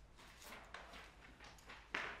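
Faint rustling and a few light taps of sheet music pages being turned and set on a grand piano's music desk, with the sharpest tap near the end.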